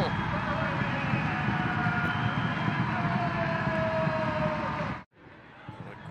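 Stadium crowd cheering and shouting after a goal, a dense steady din with voices held above it, cutting off abruptly about five seconds in.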